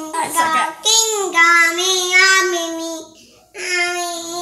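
A young child singing slow, drawn-out notes. A short break comes about three seconds in, then another long note begins.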